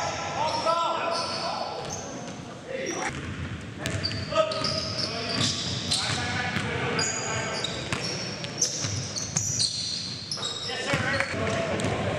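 Live indoor basketball game: a basketball dribbled on the gym floor with repeated sharp bounces, sneakers squeaking, and players calling out without clear words, all echoing in a large gymnasium.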